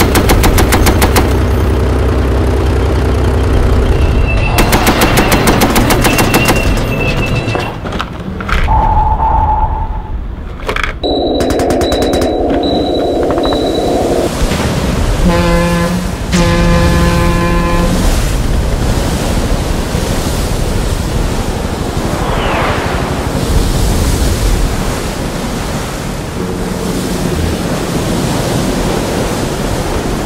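Edited-in battle sound effects: rapid machine-gun fire at the start and again a few seconds in, then a run of electronic beeps and tones, a short horn-like sounding around the middle, and a steady rushing noise like surf in the later part.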